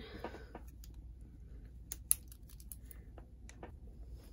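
Faint scattered clicks and light paper rustles of a pen being handled over a planner page and set to writing, with one sharper click about two seconds in.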